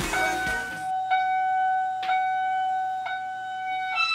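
Pop music cuts off in the first second, followed by a steady electronic chime-like tone that restarts with a sharp attack about once a second.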